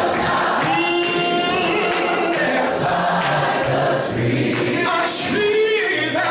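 Gospel singing without instruments: a man leads into a microphone, with other voices singing along in harmony.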